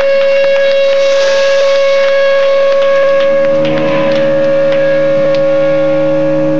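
Electric guitar feedback from a loud amplifier: one steady, high sustained tone held without fading. A second, lower drone joins it about three and a half seconds in.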